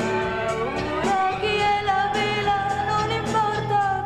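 A woman sings a ballad over orchestral accompaniment. Her voice rises about a second in and then holds one long note with a light vibrato.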